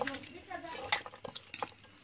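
A few light clicks and scrapes of a steel knife blade working coconut flesh out of its hard shell, against a wooden board.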